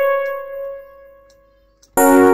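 A single software electric-piano note ringing and slowly fading away, dying to near silence near the end.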